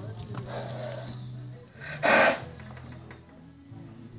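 A horse gives one short, loud snort about two seconds in, over faint background music.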